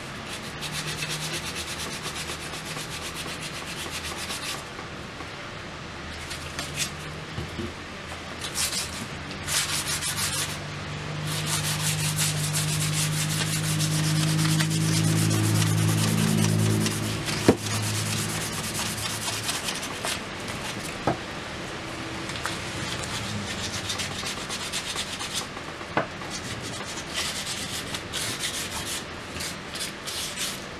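Sandpaper rubbing by hand along the wooden handle of a ball peen hammer, in repeated back-and-forth strokes. A low hum swells in the middle, and there is one sharp knock a little past halfway.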